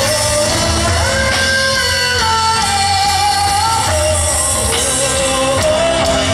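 A woman singing a gospel song live with a band, electric bass and guitar behind her, her voice holding long notes and stepping between pitches.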